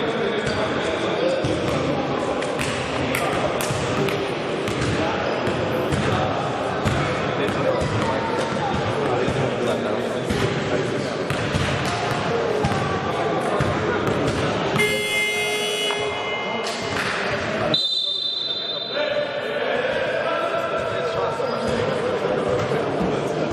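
A basketball bouncing repeatedly on a hardwood gym floor amid voices in the hall. About fifteen seconds in there is a brief buzzing tone, and about three seconds later a short high-pitched tone.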